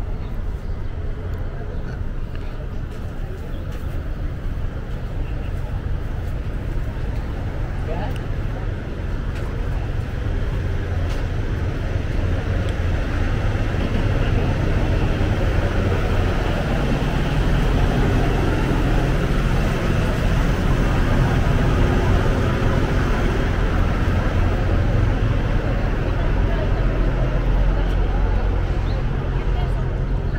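Steady traffic noise on a busy city street, with a constant low rumble of vehicles, growing louder about halfway through.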